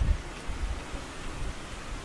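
Wind rumbling on the microphone over a steady hiss.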